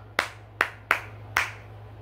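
A person clapping their hands four times in an uneven rhythm.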